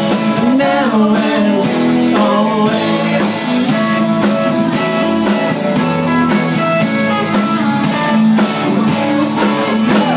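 Live rock band playing: electric guitars, bass guitar and drum kit, with cymbals ringing through.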